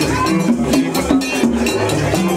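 Haitian Vodou ceremonial drumming on tall hand drums, in a fast, even, driving rhythm, with a ringing metallic beat like a struck bell keeping time.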